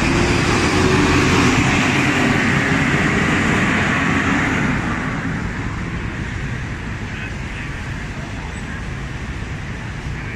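Steady traffic noise from buses and cars on a busy road, louder for the first five seconds and then easing off a little.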